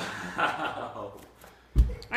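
A small child landing a jump down from a box onto a carpeted floor: one short, heavy thud near the end.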